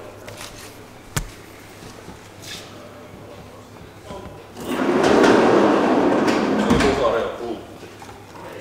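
Marker scratching across a whiteboard as a word is written: a loud, dense scratchy rubbing starting about halfway through and lasting about three seconds. A single sharp click about a second in.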